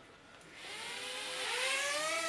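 Red 5 mini quadcopter's four small motors and propellers spinning up from rest: about half a second in, a whine of several close pitches rises, then holds steady at flying throttle.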